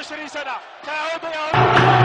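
A voice speaking in short broken phrases. About one and a half seconds in, loud music with a steady low drone cuts in suddenly.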